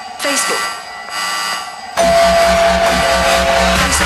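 Club electronic dance music: the kick drum and bass drop out for a short break with a brief voice, then slam back in halfway through under a held, buzzer-like high tone.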